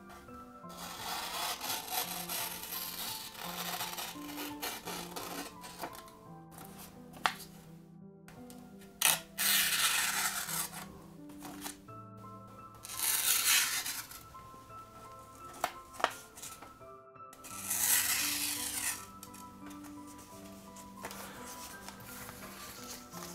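Freshly sharpened VG-10 blade of a Fallkniven P folding knife slicing through a sheet of paper in a sharpness test. There are several separate cutting strokes, the loudest about nine, thirteen and eighteen seconds in, over quiet background music.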